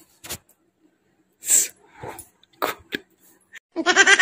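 A few short, scattered noises of a person moving on a bed, the loudest a sharp hiss about one and a half seconds in. A voice starts, laughing, near the end.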